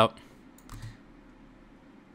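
A few faint computer keyboard clicks in the first second, over quiet room hiss.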